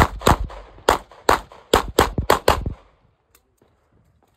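About nine 9mm pistol shots fired in quick pairs over less than three seconds, stopping about three seconds in.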